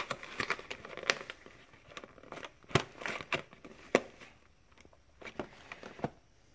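Cardboard meal box being closed by hand, its end flap folded and tucked in: crinkling and rustling with quick clicks and taps, busiest in the first second or so, then a few isolated sharp taps.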